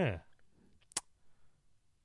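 A spoken word trailing off, then near silence broken by a single brief click about a second in.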